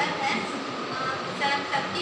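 A woman speaking into a handheld microphone in short, broken phrases with pauses, over a steady background noise.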